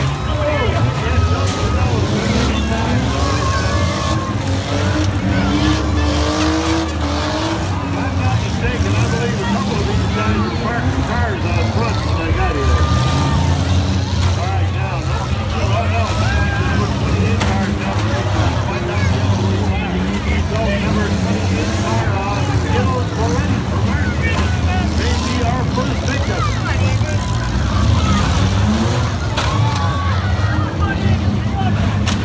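Small four-cylinder and V6 demolition derby cars running and revving hard as they ram one another, with repeated collision impacts. A crowd of spectators is shouting and cheering close by throughout.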